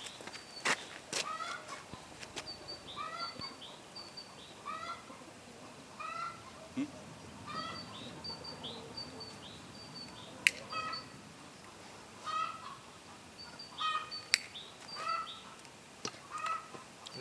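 A domestic hen calling over and over, about one call a second, each call a short bent squawk, with high short notes between them. Two sharp clicks stand out, the louder about ten seconds in.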